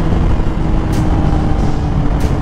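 Suzuki GSX-R sportbike riding at a steady cruise: the engine holds a steady note under heavy wind rush on the camera mic.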